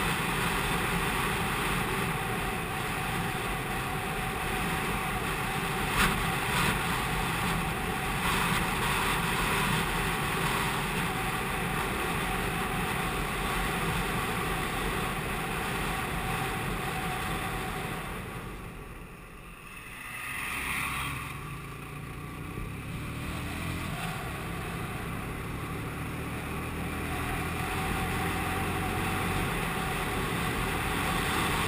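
Wind rushing over the microphone of a moving motorcycle, with the TVS Apache RTR 180's single-cylinder engine running underneath. About two-thirds of the way in the rush dips for a couple of seconds, then returns with a rising engine note.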